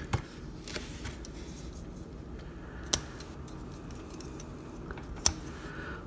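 Hard plastic parts of a small transforming robot action figure clicking as panels are folded into place by hand: a few short, sharp clicks, the clearest about three seconds in and another near the end.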